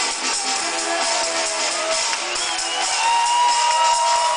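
Electronic dance music from a DJ set playing over a large PA, thin on bass, with a steady beat. A synth line glides upward a little past halfway and then holds one high note.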